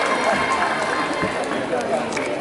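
Crowd of many voices chattering over one another.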